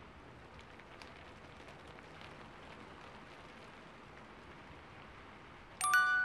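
Faint steady rain-like hiss with a few light ticks scattered through it. Just before the end a glockenspiel-like chime is struck and rings on, the loudest sound here.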